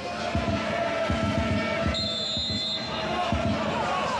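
Football stadium crowd chanting steadily, with a repeated low beat underneath. About halfway through, a referee's whistle blows once for under a second.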